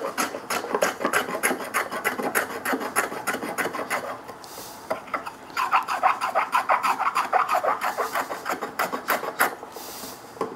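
Block plane cutting along the edges of a hardwood piece in quick short strokes, a dry rasping scrape about four times a second. The strokes stop for about a second midway, then start again.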